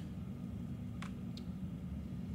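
Steady low room hum, with two brief light clicks about a second in as a plastic shaker bottle of powdered Alconox detergent is handled and set down.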